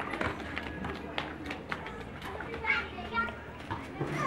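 Young children at play: their voices calling and chattering, with the quick slap of sandals on concrete as they run.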